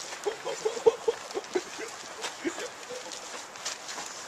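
A person laughing: a quick run of short chuckles through the first two seconds, then a few more after it.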